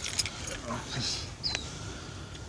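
Faint low murmured voices with a few light clicks, and one short high falling squeak about one and a half seconds in.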